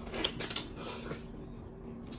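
Close-up eating sounds as a handful of amala and egusi soup goes into the mouth: a few short wet smacks and clicks in the first half second, then quieter.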